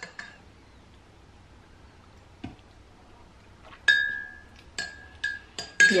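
A spoon stirring coffee in a ceramic mug. Mostly quiet at first with one soft tap, then four or five quick clinks against the mug near the end, each leaving a short ring.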